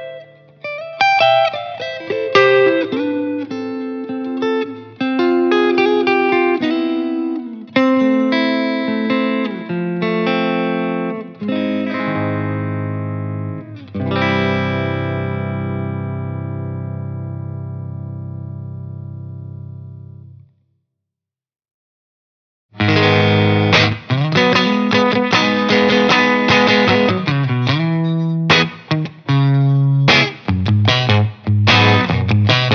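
2014 Fender Custom Shop Telecaster with Sliders Broadcaster pickups played clean through a Bogner Ecstasy 101B tube head (green channel) into a Hiwatt combo's speaker. It plays picked notes and chords and ends on a chord left to ring for about six seconds before it stops. After a two-second silence, a Stratocaster through the same Bogner into a Marshall cabinet with Celestion G12M-65 speakers starts a lightly broken-up passage.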